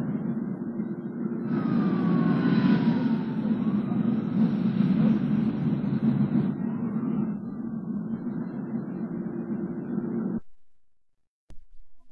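City traffic ambience: a steady rumble of vehicles, louder and brighter for a few seconds in the first half with faint gliding tones, then cutting off abruptly near the end.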